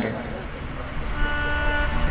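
A steady horn tone starts about a second in and holds for about a second, over a low background rumble.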